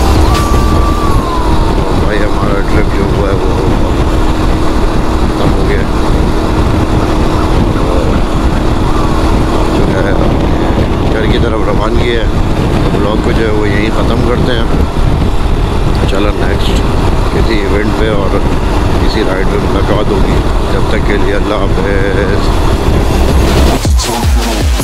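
Road Prince RX3 Cyclone motorcycle running steadily at road speed, with heavy wind rumble on the microphone. A voice comes and goes over the ride noise, no words clear enough to make out.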